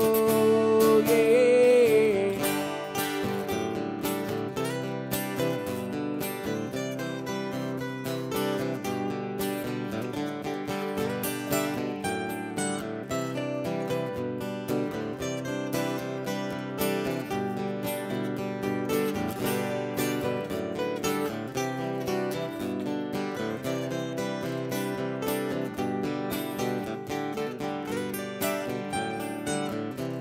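Two acoustic guitars strumming and picking an instrumental break in a country-style song.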